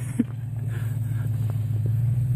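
Engine of a full-size SUV running at a distance as it drives across a dirt field, a steady low rumble.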